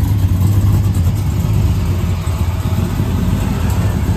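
Chevrolet Silverado pickup's engine running at low speed, a steady deep rumble.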